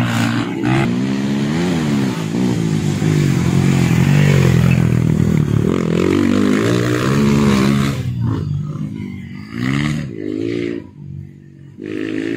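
Honda CRF150 dirt bike's four-stroke single-cylinder engine revving up and down repeatedly as it is ridden round a dirt track. It turns quieter after about eight seconds, with a couple of short revs near the end.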